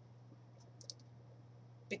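Quiet room tone with a steady low hum, broken by two faint short clicks a little before a second in. A woman's voice starts speaking at the very end.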